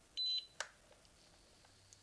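Single short electronic beep from an electric nail drill's (e-file's) control unit as it is switched on and set to speed three, followed by a soft click.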